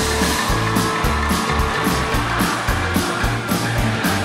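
Live band of drums, bass, keyboards and electric guitar playing an instrumental passage with a steady beat and a moving bass line.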